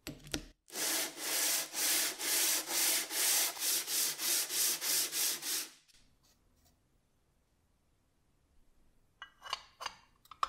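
A cast metal gearbox cover rubbed back and forth by hand on sandpaper laid flat, in an even rasping rhythm of about two to three strokes a second. It is flattening the cover's mating face so that it closes better against the housing. A few light clicks come near the end.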